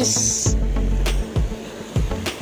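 Background music with a steady beat, and a short high-pitched hiss in the first half-second.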